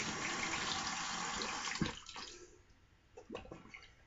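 Water running from a tap to wet the shaving lather, stopping about two seconds in with a knock. A few faint scrapes follow.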